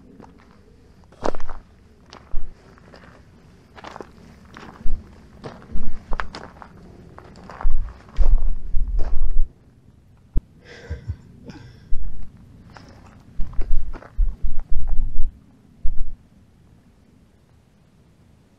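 Footsteps crunching on loose rocky desert ground at an uneven walking pace, with several louder deep thumps among them.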